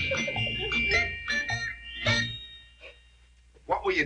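Short comedic music cue with held tones and plucked notes, dying away about two and a half seconds in; a man's voice starts near the end.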